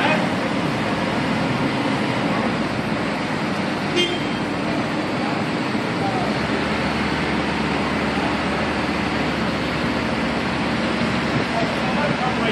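Mobile crane diesel engines running steadily during a two-crane lift. About four seconds in there is one very short horn toot, the kind of honk signal the two crane operators used to coordinate the lift.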